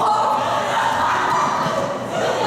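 High-pitched female voices shouting and cheering in a long, sustained yell.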